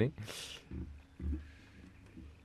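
A man's breathy exhale close to the microphone, followed by two short, low, quiet chuckles.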